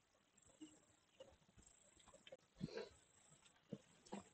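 Near silence, broken by a few faint, brief sounds. The clearest comes about two-thirds of the way in.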